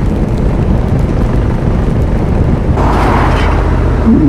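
Motorcycle engine running at road speed under steady wind noise on the microphone, with a brief swell of rushing noise about three seconds in.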